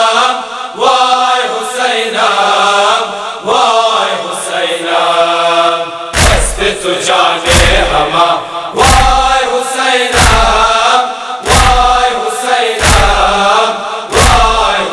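Voices chanting a noha, a Shia lament, at first unaccompanied; about six seconds in a heavy, deep thump joins under the chanting, struck about every second and a half.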